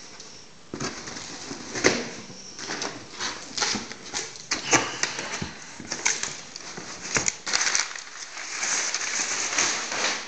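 Cardboard box flaps being opened and crumpled kraft packing paper being handled: a run of irregular crackles, rustles and rips, turning into denser crinkling near the end.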